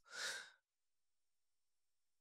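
A single short breath from the man speaking, then silence.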